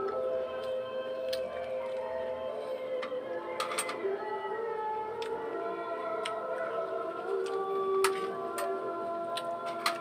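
Background music of steady, overlapping held notes, with scattered short sharp clicks over it, the loudest about eight seconds in.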